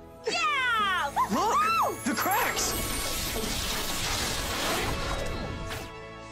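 Film soundtrack: music plays under a few high vocal whoops that rise and fall in pitch during the first two seconds. A rushing noise effect then swells and fades away over the next few seconds.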